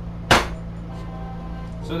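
A single sharp clack of glass rods knocking together about a third of a second in, as a bundle of glass sticks is arranged around a carbon rod, with a brief ringing tail.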